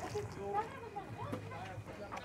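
Faint voices of people talking in the background, with a low hum, while nothing louder is heard.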